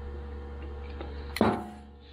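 Steady low hum, then a single sharp metallic click with a short ringing tail near the end, from the snowmobile's carburetor rack being handled while its choke plungers are worked.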